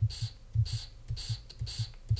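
The recorded final 's/z' of the word 'languages', a short hiss of about a quarter second, played back four times in a row, with soft low thumps between the plays. The hiss carries no voicing: the plural ending that should be a voiced [z] comes out as a voiceless [s].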